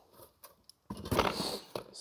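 Cardboard box being closed and set down on trunk carpet: near quiet at first, then a rustling scrape about a second in.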